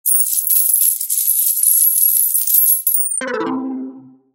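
Slot machine sound effect: a bright metallic jingling of coins pouring out for about three seconds, then a short pitched chime of several notes that rings out and fades.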